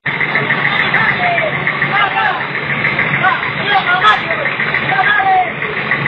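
A large vehicle's engine running slowly and steadily, with people's voices calling out over it.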